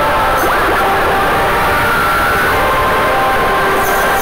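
Soundtrack of a cartoon video playing on a phone: loud, dense music with several held tones over a noisy bed and a brief rising glide about half a second in.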